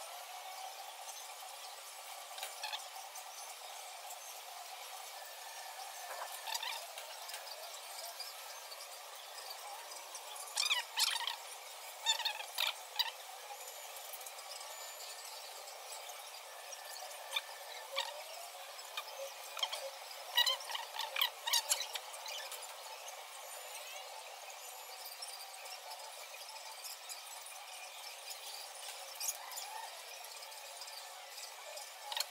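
Utensils knocking and scraping against a pot as a cap is stirred in a dye bath, in a few short clusters of clicks over a steady, thin-sounding hiss.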